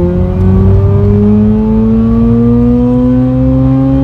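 Mazda RX-8's rotary engine at full throttle in a single gear, heard from inside the cabin, its pitch climbing steadily from about 5,000 rpm toward redline with no gear change.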